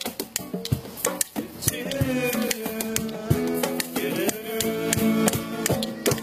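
Acoustic guitar strummed together with a hand drum struck by hand in rhythm, and a voice singing long, wavering notes over them.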